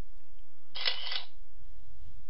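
Camera-shutter sound effect from a slideshow, one short burst about half a second long, a little under a second in, as the slide's photo appears.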